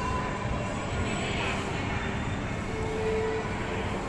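Shopping-mall background ambience: a steady hum with faint, indistinct crowd voices, and a short held tone about three seconds in.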